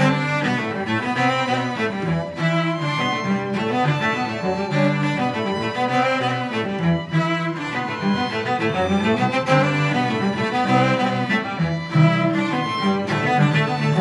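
Two violins and three cellos playing a tune together with bows, the cellos' low notes the strongest part of the sound.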